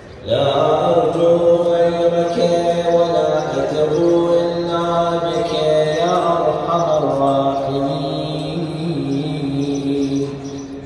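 A man's voice chanting an Islamic devotional recitation in long, held melodic notes, starting abruptly just after the beginning and shifting pitch a few times.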